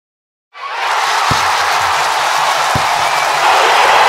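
Intro sting for a football highlights package: a crowd-roar sound effect over music with a low beat and two deep hits. It starts about half a second in.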